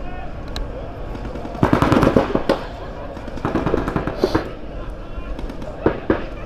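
Paintball markers firing in rapid strings of pops: a dense volley about a second and a half in, another around three and a half seconds, and a single sharp shot near the end.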